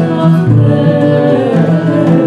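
A woman singing a Sephardic folk song in Ladino, accompanied by violin, oud and flute in a live acoustic ensemble.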